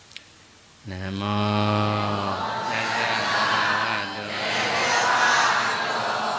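Buddhist chanting by male voices, starting about a second in after a short click: the first syllable is held on one steady pitch, then the recitation goes on in a fuller sound with a brief pause near the middle.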